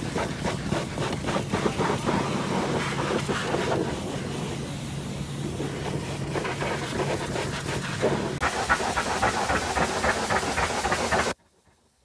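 High-pressure washer jet spraying water against a truck tyre and steel wheel: a steady hiss of spray over a low steady hum. About eight seconds in the hum stops while the spray goes on, and near the end the sound cuts off abruptly.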